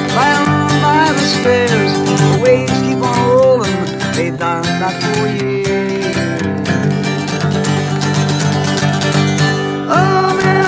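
Acoustic guitar strummed steadily, with a man singing along over it.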